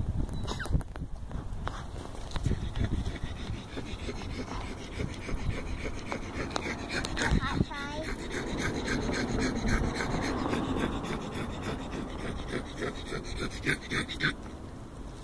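A dog panting close to the microphone, loud, in quick even breaths about four a second.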